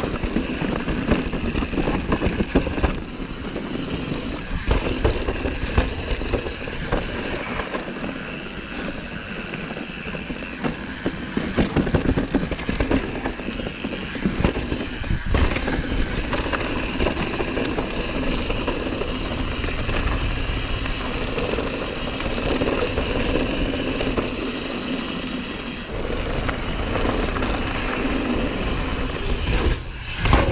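Mountain bike riding down a dirt trail: continuous tyre rolling noise with frequent rattles and knocks from the bike as it goes over the ground.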